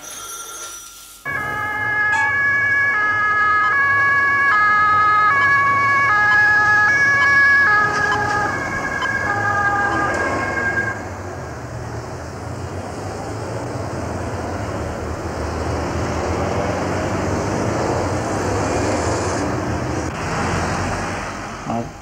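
A run of electronic tones stepping up and down in pitch over one held high tone, starting suddenly about a second in and stopping about halfway through. After that, steady city road traffic noise: engines and tyres passing.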